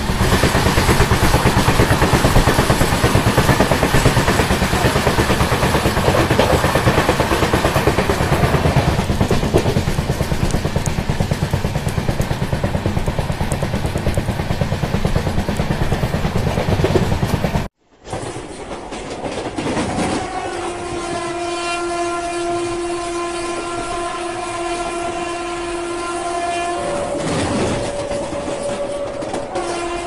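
Indian Railways passenger train running at speed, heard from an open coach door: a dense, steady rush of wheel and track noise. After a sudden cut about two-thirds through, a long, steady train horn sounds over quieter running noise and changes pitch near the end.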